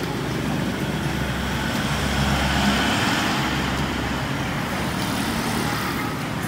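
Steady road-traffic noise with a low rumble, swelling about two seconds in as a vehicle passes close by, then easing.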